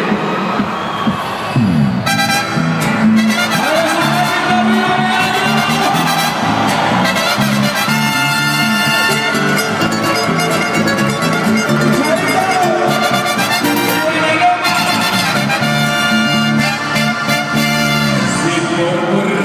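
Live band playing Colombian música popular through the PA, guitars over a steady repeating bass rhythm that sets in about two seconds in.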